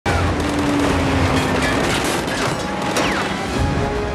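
Action-film soundtrack mix: dramatic music under heavy crashes and booms, loud and steady throughout.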